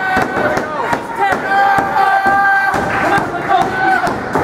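People's voices yelling and shouting over a wrestling hold, with one long, high-pitched yell held for about a second in the middle.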